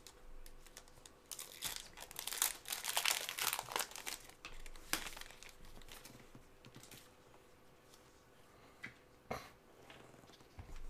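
Foil trading-card pack wrapper crinkling and tearing as gloved hands open it, densest in the first few seconds and thinning out later, with a couple of short clicks near the end.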